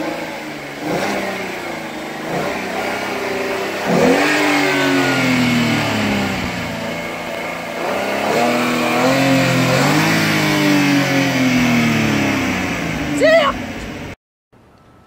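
2014 Ford Mustang engine revved several times while parked, each rev climbing quickly and then falling back slowly. A brief, high rising sound stands out near the end.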